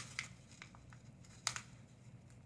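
Faint handling noise of fingers pressing a googly eye onto a paper tube: a few light clicks and paper crinkles, the sharpest about a second and a half in.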